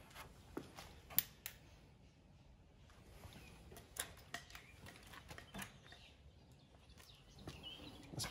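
Quiet workshop with a few faint, short clicks and light knocks from tools and the steel panel being handled, the most distinct about a second in and near four seconds in.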